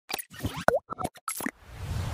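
Pop and plop sound effects of an animated logo intro: a quick run of short pops, one bending up and down in pitch. Then, near the end, a swelling whoosh with a low rumble.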